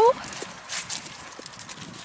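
A horse shifting its feet on dirt: a few faint, soft hoof knocks.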